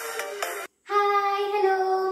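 Background music that cuts off suddenly, followed after a brief gap by a girl's voice holding one long, steady note.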